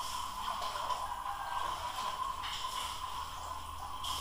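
Steady low background hiss with a faint, even whine underneath: the recording's own background noise.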